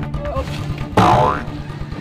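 A cartoon 'boing' sound effect about a second in, its pitch gliding upward, over background music with a steady low beat.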